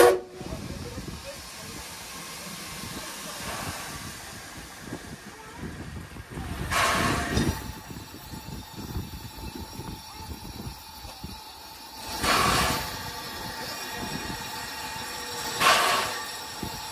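Standing NZR Ab class steam locomotive hissing steam, with several louder bursts of hiss a few seconds apart. Wind rumbles on the microphone underneath.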